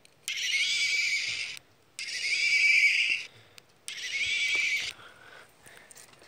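Toy unicorn's sound button playing a recorded horse whinny through a small speaker, three times in a row with short gaps. Each whinny lasts about a second, sounds high and thin, and cuts off abruptly.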